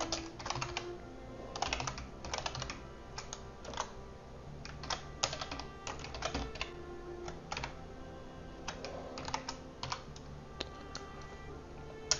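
Computer keyboard being typed on in short bursts of keystrokes with brief pauses between them.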